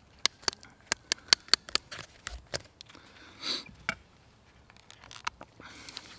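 Small sharp clicks and taps from handling a hand-held leather hole punch and leather strap. A quick run of about a dozen comes over the first two and a half seconds, with a few more a little after five seconds. A single sniff comes about three and a half seconds in.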